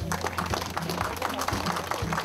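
Applause: hands clapping in a dense, steady patter.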